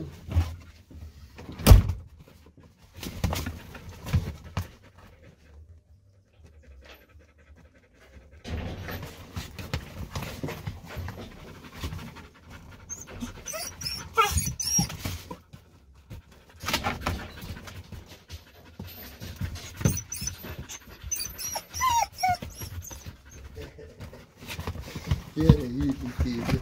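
Dogs panting inside a small car cabin, with a few short, high whines. A sharp click about two seconds in.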